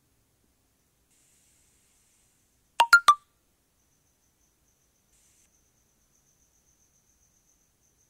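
A short electronic chime of three quick pitched notes, about three seconds in, in an otherwise silent gap. It is the signal tone between sections of a recorded listening test.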